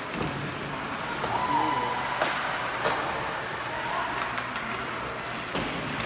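Ice hockey rink ambience during play: skates scraping on the ice and a few sharp clacks of sticks and puck, over spectators' voices.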